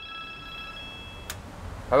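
Telephone ringing with a steady chiming ring of several tones held together, which stops with a click a little over a second in as the payphone handset is lifted. A low street hum runs underneath.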